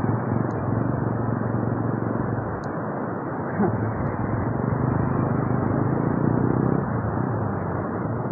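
Ocean surf breaking on a beach: a steady rushing wash of noise that swells slightly in the middle seconds.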